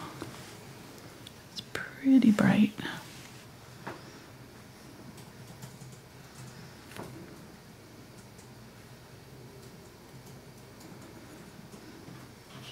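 A short muttered word about two seconds in, then quiet room tone with a few faint ticks.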